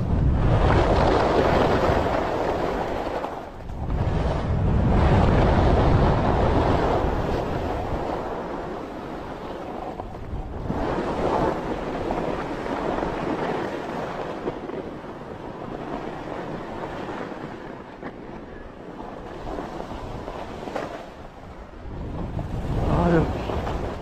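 Skis sliding and scraping over soft snow on a downhill run, the rush swelling and dropping with each turn, mixed with wind rushing over the microphone.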